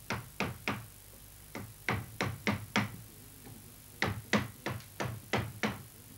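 Upholsterer's hammer tapping on a wooden chair frame: runs of quick, sharp knocks about three a second, with short pauses between the runs.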